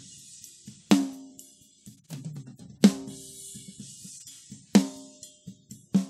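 A drum kit's snare-drum track played back alone: three ringing snare hits about two seconds apart, with weaker hits between them and a steady high hiss of hi-hat and cymbal bleed. The de-bleed process is at its lowest sensitivity, so very little of the bleed is removed.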